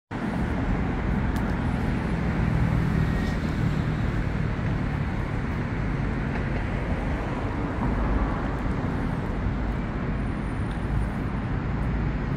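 A steady, low rumble of motor-vehicle noise mixed with outdoor background noise, even in level throughout.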